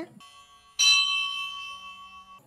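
A bell struck once about a second in, ringing with several clear tones and fading away in the pause between chanted lines of a mantra.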